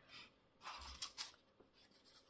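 Faint rustling of paper being handled, in a few short bursts.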